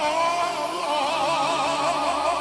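Live manele band music between sung lines: a lead instrument plays a melody in two parallel lines, wavering with a fast, wide vibrato over a steady backing.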